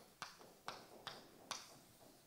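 Chalk writing on a blackboard: about four faint, short taps and scratches as the chalk strikes the board for each stroke.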